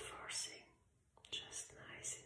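A woman whispering in two short phrases, the second starting with a small mouth click about a second in.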